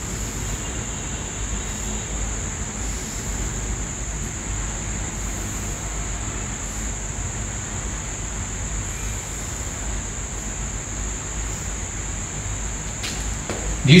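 Steady background noise: a low hum under a constant thin, high-pitched whine, with no distinct events.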